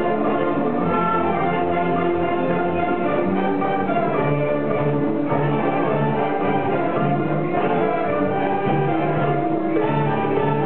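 A youth ensemble of clarinets and violins playing music together, with a repeating low bass line coming in about halfway through.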